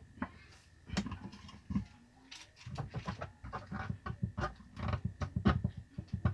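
Irregular light clicks, knocks and scrapes of a hand working at a just-tightened pulsator and its bolt inside a washing machine's plastic tub, thickening into a rapid run of small clicks from about halfway through.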